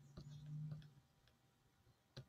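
Near silence broken by a few faint computer clicks in the first second, with a brief low hum under them.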